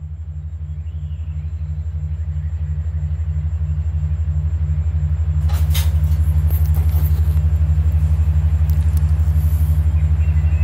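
Low electronic drone tones pulsing rapidly and evenly, an isochronic-tone beat bed, growing louder over the first five seconds and then holding steady. A faint high shimmer comes in about halfway through.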